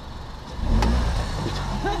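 Low rumble of a car moving off, heard from the open window, swelling suddenly about half a second in, with one sharp click just after. A voice starts near the end.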